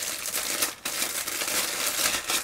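Clear plastic bag crinkling continuously as hands unwrap it, with a short lull a little before the middle.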